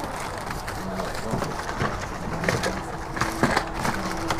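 Small packets, paper and plastic rustling and clicking as they are picked through by hand, with a few short, low, steady hums or coos underneath; a longer one begins near the end.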